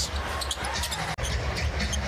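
Basketball game sound from the arena: a steady crowd murmur with the ball bouncing on the hardwood and short sneaker squeaks. An edit cut breaks it off briefly a little past a second in.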